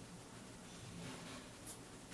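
Faint rubbing of a fingertip sliding across the touchscreen of a Dell Mini 9 netbook, followed by a light tap near the end.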